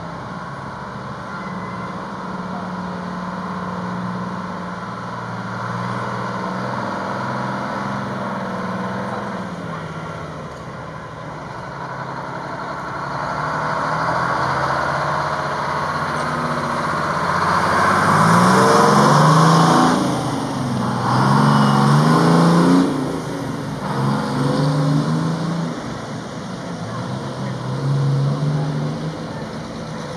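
Vintage fire engines' engines running as the trucks pull out and drive past one by one. Loudest about two-thirds in, as one passes close and accelerates with its engine pitch climbing in steps through the gears, and another engine is heard near the end as the next truck rolls out.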